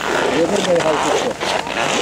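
Skis scraping over packed snow while skiing downhill, with a person's voice talking over it.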